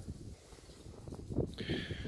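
Soft rustling and handling sounds as a hand pets a one-year-old mastiff, then a high, thin whine from the dog starting near the end.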